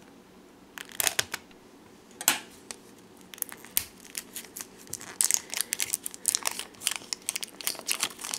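Scissors snipping the plastic shrink-wrap seal on a plastic surprise egg, a few separate snips in the first seconds. From about five seconds in comes a dense run of plastic wrap crinkling as it is peeled off the egg by hand.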